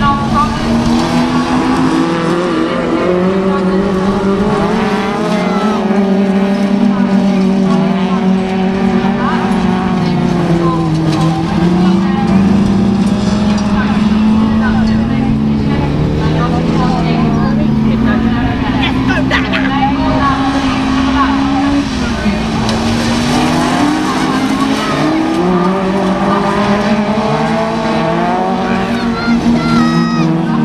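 Several autograss race cars, small hatchbacks, racing on a dirt track, their engines revving hard and overlapping. The pitch keeps climbing and dropping through gear changes and as the cars pass.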